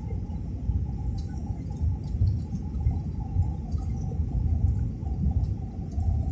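Cabin noise inside an easyJet Airbus A320-family airliner on its descent to land: an uneven low rumble of engines and airflow with a steady mid-pitched drone over it.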